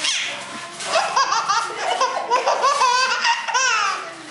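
A baby laughing, a run of high-pitched laughs one after another from about a second in.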